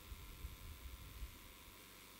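A pause in the speech: faint room tone with a steady hiss, and a few soft low bumps in the first second or so.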